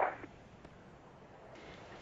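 Near silence: faint steady hiss of the broadcast audio feed. It follows the cut-off end of a radio voice at the very start, and the hiss grows slightly brighter about a second and a half in.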